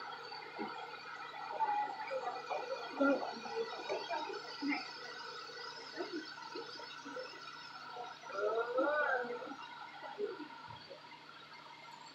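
Indistinct voices in the background over a steady electrical hum.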